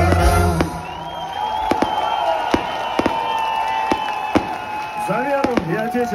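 Fireworks display: irregular sharp bangs and pops from bursting shells, about a dozen. Music stops about a second in, and a long steady high tone follows. Crowd voices rise near the end.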